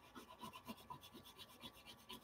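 Faint scratchy rubbing of an oil pastel scribbled back and forth on drawing paper with light pressure, about six short strokes a second.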